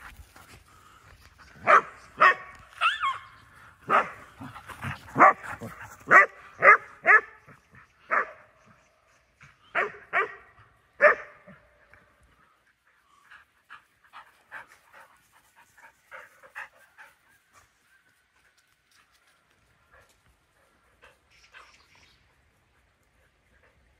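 Dogs barking in play: a run of about a dozen loud, short barks over the first ten seconds or so, then fainter, sparser barks, dying away near the end.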